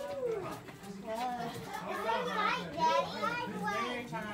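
Indistinct voices of children and others talking and calling out, with no clear words.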